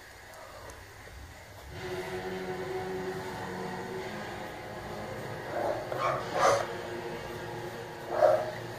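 A dog barking a few times, about six seconds in, over a steady background drone with a few held tones that begins about two seconds in.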